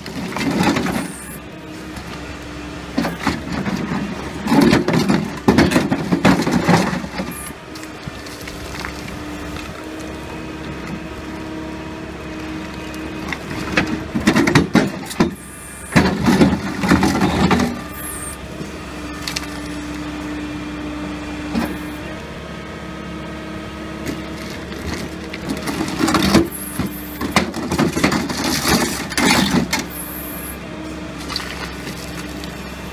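Rigid hydraulic concrete pulverizer on an excavator crushing reinforced concrete: loud bursts of cracking and grinding as the jaws bite, over the excavator's engine running steadily. The bursts come several times, with stretches of only the engine hum between them.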